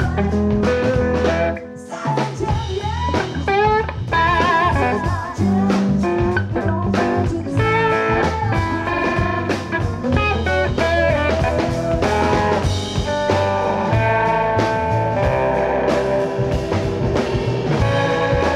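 Live band playing an instrumental passage: electric guitar leading a wavering, bending melody over a drum kit and bass.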